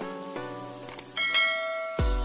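Background music of short pitched notes, with two quick clicks just under a second in. A bright bell chime then rings out until the end: the click and notification-bell sound effect of a subscribe-button animation.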